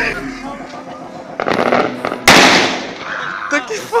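A single firecracker going off about two seconds in: one sharp, loud bang that fades quickly.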